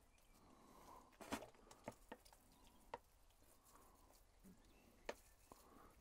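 Near silence, with a few faint soft ticks and taps from watering compost with a squeezed plastic bottle fitted with a spray top.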